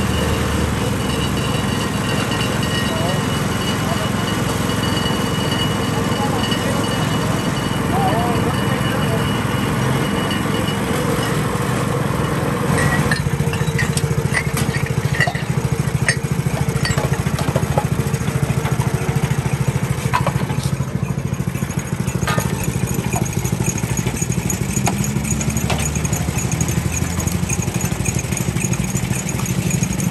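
Motorized sugarcane juice crusher running steadily as it presses cane, its engine hum continuous. From about halfway through, short clinks of glassware being rinsed and handled sound over it.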